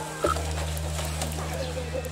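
A single sharp knock about a quarter second in, then a faint wavering voice over a steady low hum.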